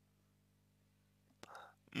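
Near silence with a faint steady low hum, then a man's short, soft intake of breath about a second and a half in.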